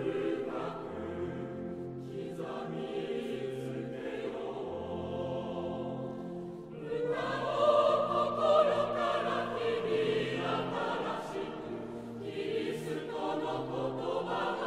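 A choir singing a slow sacred hymn in long held notes over a changing bass line, growing louder about halfway through.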